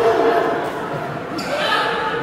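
Voices and chatter echoing in a large sports hall, with a single sharp hit about one and a half seconds in.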